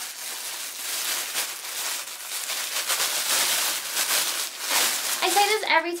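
A clear plastic packaging bag crinkling and rustling continuously as it is handled and pulled open.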